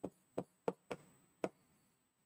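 Stylus tip tapping on a pen-display screen while writing, five short, irregular taps.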